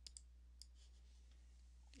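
Near silence with a low steady hum, broken by a few faint computer-mouse clicks near the start and about half a second in.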